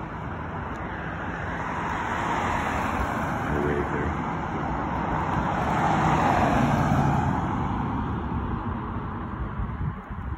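A car passing by on the street, its tyre and engine noise swelling to a peak about six to seven seconds in, then fading away.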